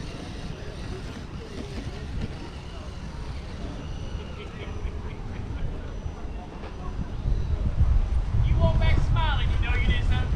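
Low rumble of wind or handling on the microphone, louder from about seven seconds in, with a person's voice near the end.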